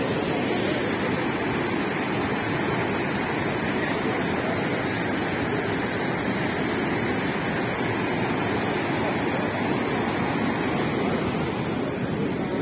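Water from an overflowing lake rushing and churning through a channel, a steady, unbroken rush of white water.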